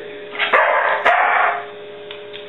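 A large white dog barks twice in answer to "one plus one": two short barks, one right after the other, in a trained counting trick.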